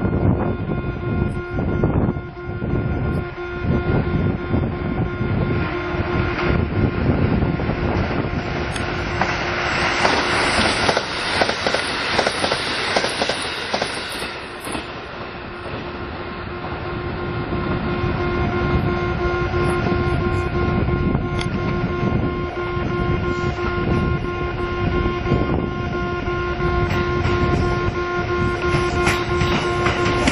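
Kintetsu 50000 series 'Shimakaze' electric limited express train approaching and passing, its running noise building to wheels clattering over rail joints near the end. A louder hiss swells and fades in the middle, and a few steady tones sound throughout.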